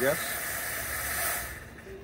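Fog machine hissing steadily as it pushes out fog, cutting off suddenly about one and a half seconds in, leaving a quieter steady noise.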